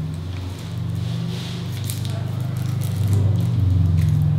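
A steady low hum runs throughout, with faint crinkling of a needle packet's paper and plastic being peeled open.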